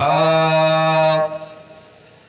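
A man's voice chanting the end of a line of Urdu verse into a microphone, holding the last syllable as one long steady note that stops a little past a second in and then fades away.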